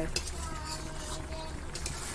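Thick tomato and jaggery chutney bubbling and popping as it boils in a metal pan, with a metal spatula stirring and scraping through it, while it is cooked down uncovered to thicken. There is a low hum underneath.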